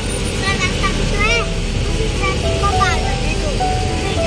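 Steady engine and road noise heard from inside a moving auto-rickshaw, with a girl's voice and music over it.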